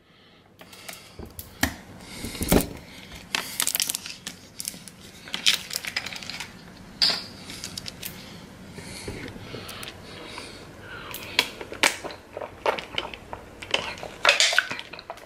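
A thin plastic water bottle crinkling and clicking in the hands as its screw cap is twisted open, an irregular string of sharp crackles and clicks.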